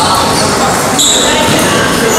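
Celluloid-type table tennis ball being struck by bats and bouncing during a rally, ending with the ball dropping onto the tiled floor, against a background of voices in a large echoing hall.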